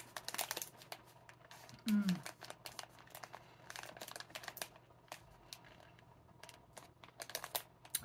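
Plastic snack bag crinkling in irregular bursts of small crackles, with a short hummed 'mm' about two seconds in.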